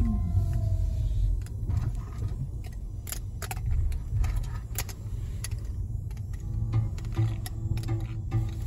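Ford EcoSport's engine running, heard from inside the cabin as a steady low rumble, with scattered light clicks and rattles.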